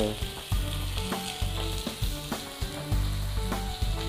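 Chopped onions frying in hot refined oil in a kadai, a steady sizzle.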